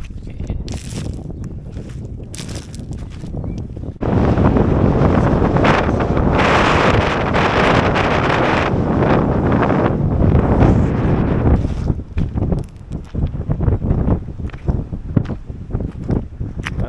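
Wind buffeting the microphone: a steady rush that jumps much louder about four seconds in, then eases into uneven gusts over the last few seconds.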